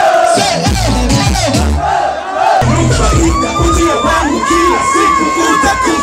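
A concert crowd shouting and cheering over loud music with a heavy bass from stage speakers.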